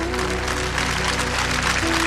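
Audience applause swelling over the closing instrumental notes of a live ballad.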